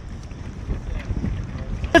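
Wind buffeting an outdoor phone microphone: an uneven low rumble that rises and falls, with faint voices under it.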